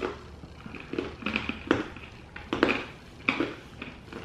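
Granola clusters and an almond being chewed: a string of irregular crisp crunches, a few seconds apart to a few per second.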